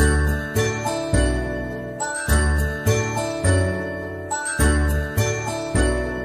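Instrumental background music: a bright, jingling bell-like melody over a steady beat of bass notes.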